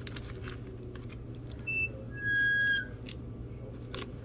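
Two short, steady whistle-like tones, a brief high one followed by a lower, louder one lasting about half a second, over a steady low hum, with a few faint clicks.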